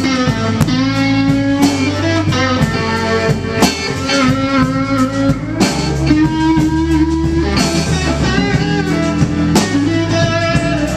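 Live blues band playing: electric guitars, a Fender Stratocaster and a Telecaster, over bass and drums, with a lead guitar line of held notes that bend slightly.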